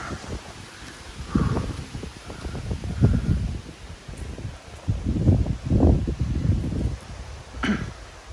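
A person's heavy, out-of-breath breathing close to the microphone, in several rushing breaths a second or two apart, after a tiring barefoot climb. A short vocal sound comes near the end.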